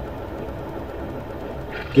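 Steady background hum and hiss with no distinct event.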